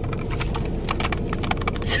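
Crinkling and crackling of a food wrapper being handled and unwrapped, a dense run of small sharp clicks.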